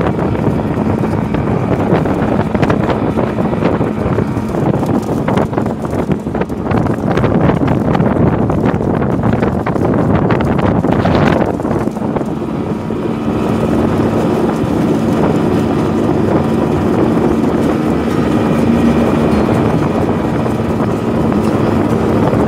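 Small motorboat's engine running steadily under way, with wind buffeting the microphone; its steady hum comes through more clearly in the second half.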